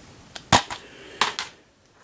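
Plastic DVD cases being handled, giving a sharp click about half a second in and a few softer clicks and taps a little later as one case is put down and the next picked up.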